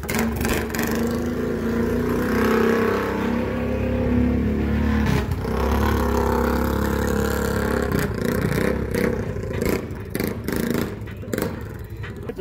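A lifted four-wheeler ATV's engine running as it is ridden, the throttle rising and falling. There is clatter in the last few seconds.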